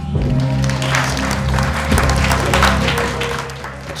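Audience applauding over background music, the clapping swelling just after the start and fading out near the end.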